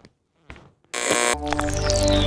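A few faint short clicks, then about a second in a loud buzzing electronic burst that gives way to a droning synthesizer music bed with a long falling pitch sweep.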